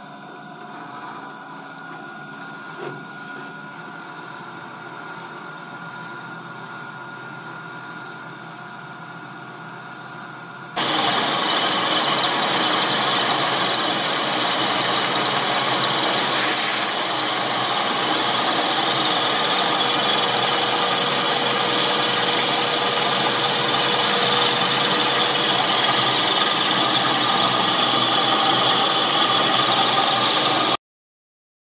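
Milling machine running with an end mill cutting metal. Two brief loud squeals come from the cut about two and three seconds in, over a steady motor hum. About eleven seconds in the sound jumps to a much louder, steady cutting noise.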